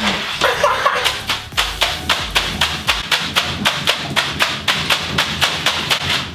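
A fast, irregular run of sharp taps, several a second: Orbeez water beads thrashed by kicking legs and pelting the bathtub and tiled walls.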